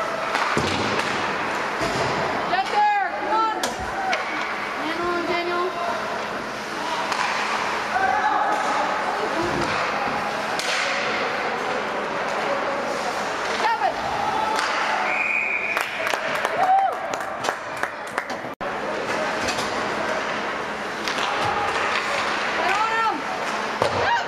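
Ice hockey game in a large indoor rink: voices and shouts from spectators and players over a steady rink hum, with slams and thuds of pucks and bodies hitting the boards and a cluster of sharp knocks and clatters past the middle.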